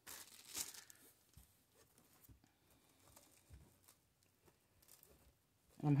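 Faint rustling and crinkling of plastic deco mesh being handled and bunched on a wire wreath frame, strongest in the first second, then a few light scattered rustles.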